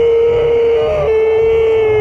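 A fan's long, sustained yell held on one pitch for more than two seconds, with a brief higher lift about a second in, then trailing off with a falling pitch at the end, over crowd noise.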